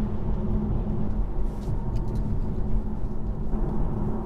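Inside the cabin of a Tesla Model 3 Performance on the move: steady tyre and road rumble with a faint steady hum.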